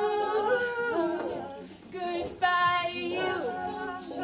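Wordless a cappella singing: held vocal notes that step between pitches, no instruments. The sound dips just before two seconds in, then returns on a bright, higher held note.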